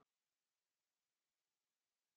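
Near silence: digital silence with only a faint background hiss.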